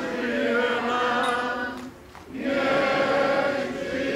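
Many voices singing together as a group, held notes with a short break for breath about two seconds in.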